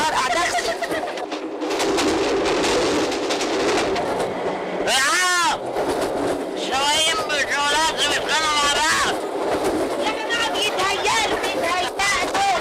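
Steady running noise of a train carriage under raised voices, with a short high cry that sweeps up and back down about five seconds in.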